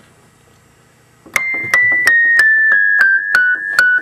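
Wurlitzer 200 electric piano playing a descending run of about nine high treble notes, one after another at roughly three a second, starting about a second in. Each note is a hammer striking a reed, with a sharp attack.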